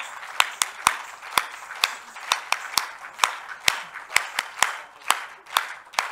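Audience applauding, with sharp hand claps close to the microphone standing out at about three to four a second.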